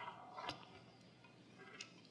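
Near silence broken by a couple of faint clicks, about half a second in and again near the end, as a pair of eyeglasses is picked up off a wooden lectern and put on.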